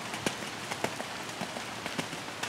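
Steady rain with many irregular sharp drop taps close by, as rain strikes an umbrella held over the microphone.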